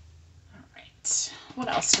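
Quiet room tone with faint small sounds, then a short loud hiss about a second in, followed by a woman beginning to speak softly.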